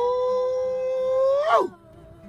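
A woman's singing voice holding one long high note, the last note of a song, over faint acoustic guitar; the pitch lifts slightly at the end and the note breaks off about a second and a half in.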